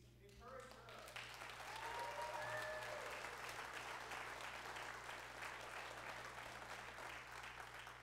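A congregation applauding. The clapping swells over the first two seconds, with a few voices calling out at its loudest, then carries on steadily and dies away near the end.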